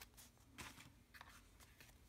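Near silence: faint room tone with a few soft rustles and taps of paper greeting cards being handled and swapped.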